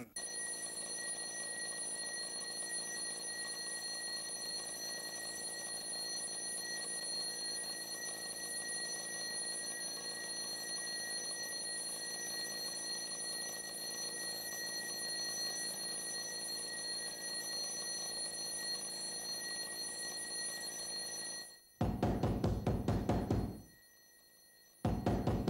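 A steady background drone with a few fixed high tones, then near the end a mechanical alarm-clock bell ringing rapidly for about two seconds and stopping abruptly.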